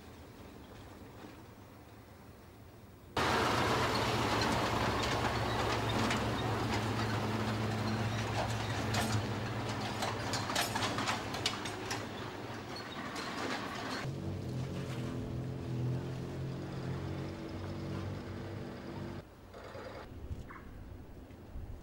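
Truck engine running with loud rattling and clatter from the vehicle over a rough, potholed road, starting suddenly about three seconds in. About two-thirds of the way through it changes to a steadier engine note with a low hum, which stops shortly before the end.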